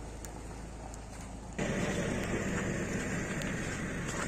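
Vehicle engine idling, heard as a steady low rumble. About one and a half seconds in, the sound jumps suddenly louder and fuller, as of an idling engine much closer by.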